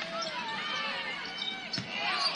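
A basketball being dribbled on a hardwood court, a few scattered bounces over the chatter of crowd and player voices in the arena.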